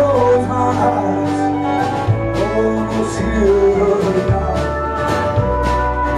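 Live folk-rock band playing an instrumental passage of a song: fiddle and pedal steel guitar play sliding melody lines over upright bass, acoustic guitar and drums, with steady cymbal hits.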